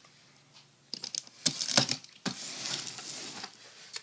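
Several sharp clicks from a box cutter, its slider clicking as the blade is run out, followed by a softer scrape of the blade and hand against a cardboard shipping box.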